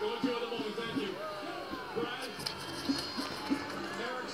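Soundtrack of an animated film playing from a television, recorded off the TV speaker: music with a steady beat and voices over it.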